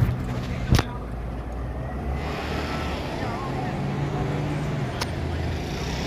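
Street traffic noise: a steady low engine hum with faint distant voices, and two sharp clicks, one about a second in and one near the end.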